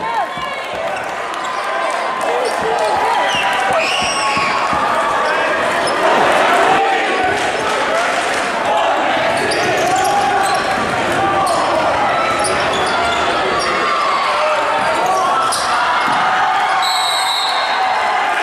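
Crowd chatter filling a school gym, with a basketball bouncing on the hardwood and short high sneaker squeaks during play. A short high referee's whistle sounds near the end.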